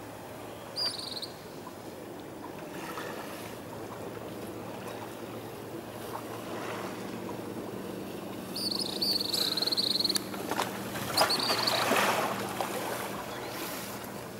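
Gentle sea water lapping at the shore, with a faint steady low hum underneath. A few short high-pitched chirps come about a second in and again around nine and eleven seconds, and a louder wash of water swells near the end.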